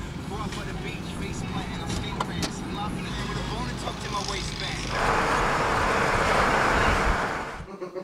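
Car driving, heard from inside the cabin: a steady low engine and road rumble. About five seconds in a louder rushing noise comes in and holds until it cuts off just before the end.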